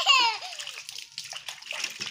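A small child's crying wail that breaks off about half a second in, followed by splashing and dribbling water as the soapy child is washed and rinsed.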